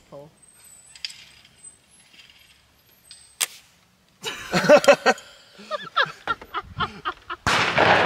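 The flintlock lock of a Pedersoli Northwest trade gun snaps with a single sharp click about three and a half seconds in, but the gun does not fire: the flint has fallen out of the cock, so there is no spark. Voices follow, then a loud rush of noise near the end.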